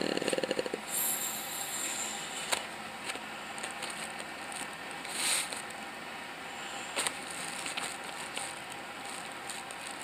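Handling noise from the phone and the card of press-on nails being moved: low rustling with a few small, sharp clicks scattered through it.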